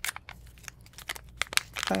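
Crinkling and tearing of a powdered drink-mix stick packet as it is handled and torn open: a quick, irregular run of small crackles.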